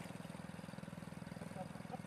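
A small engine running steadily, with a rapid, even, low-pitched pulse.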